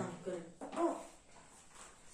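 A man's voice trailing off, then one short, quiet voiced sound, like a hum or murmur, about a second in, followed by near silence.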